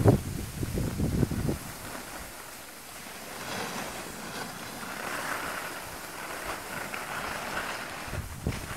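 Wind buffeting the microphone with rough low rumbles for the first second and a half, then a steady hiss of a snowboard sliding over packed snow.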